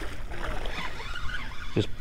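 Hooked red drum splashing at the water's surface beside the dock, an irregular run of splashes as it is played in on the line.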